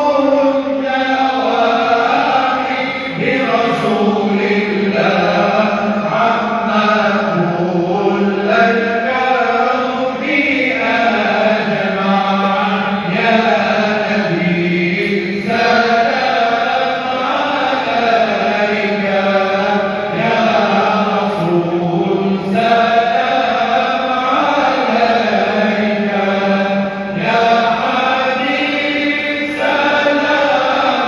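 Slow chanted singing: voices holding long, melodic phrases that rise and fall in pitch, continuing without a break.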